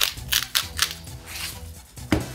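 Salt mill being twisted to grind salt over fish, a run of sharp crunching clicks, a few a second.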